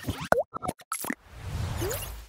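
Animated channel-logo sting made of sound effects: a quick string of short pops and plops, one with a fast swooping pitch, then a low swelling whoosh with a short rising glide near the end.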